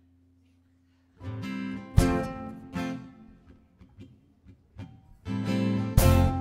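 Acoustic guitars playing live: after about a second of near silence, strummed chords come in with sharp accents, ring out and fade, then hard-struck chords return near the end.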